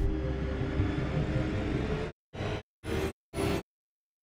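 Trailer sound design: a low rumbling drone that cuts off abruptly about two seconds in, followed by three short stuttering pulses about half a second apart, then dead silence.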